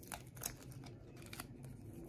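Faint, scattered small clicks and crackles of tape and flaking foil being peeled off a plastic CD by hand.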